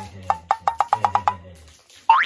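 A quick run of about ten ringing, wood-block-like knocks that come faster and faster and then stop, like a bouncing ball settling, over a low steady hum.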